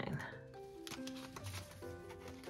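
Soft background music of held, steady notes, under the light rustle and flick of paper banknotes being counted through by hand.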